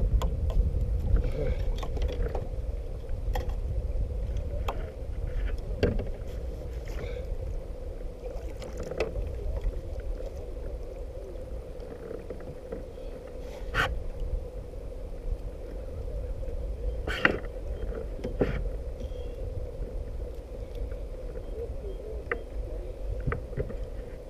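Steady low rumble of wind and water on a kayak-mounted camera, with a faint steady hum. A few sharp clicks and knocks of handled gear come through, the loudest about 14 and 17 seconds in, while a bass is netted from the kayak.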